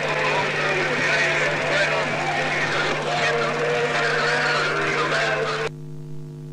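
Parade crowd voices mixed with a running vehicle engine from the tractor carrying the float, cut off abruptly shortly before the end, leaving a steady hum.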